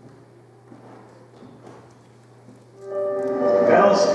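A faint, steady hum of a quiet room, then about three seconds in a film clip's soundtrack starts playing loudly over speakers: music with long held notes.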